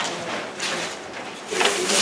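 Sheets of paper being torn by hand and crumpled into small balls, heard as rustling and tearing in several short bursts.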